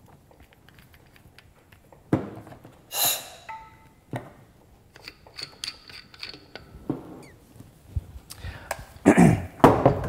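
Handling sounds from a scuba regulator's first stage and A-clamp yoke on a cylinder valve: scattered knocks and clunks of metal and plastic parts, with a louder short burst about three seconds in and more near the end.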